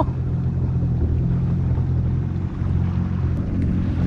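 Jet ski engine running steadily while cruising slowly, a low, even hum.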